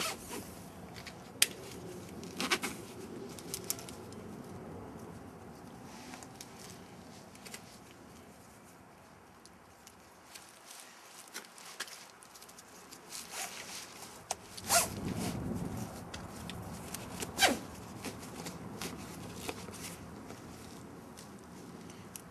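Backpack harness being put on and adjusted: nylon straps rasping through their buckles, with rustling and scattered sharp clicks and knocks, a few louder ones about two-thirds of the way through.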